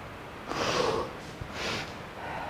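A man breathing hard from exertion in punching pad work: two loud, noisy breaths about a second apart.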